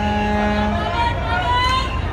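Low, steady rumble of a river passenger launch's engines, with a steady droning tone over it that cuts off under a second in, and voices.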